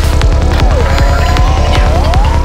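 Dark psytrance track at 156 bpm: a steady, fast kick-and-bass pulse with a synth line that glides down in pitch about two-thirds of a second in and climbs back up near the end.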